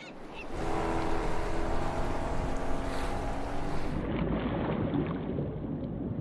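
A steady droning hum over rushing water noise. About four seconds in it gives way to a duller, muffled rumble of surf breaking over a reef, heard from underwater.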